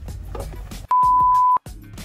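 A censor bleep: a single steady high beep tone, under a second long, starting about a second in, with the other audio cut out around it. Faint background music plays before it.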